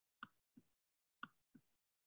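Faint short taps of a stylus on a tablet screen while handwriting, four in two pairs, otherwise near silence.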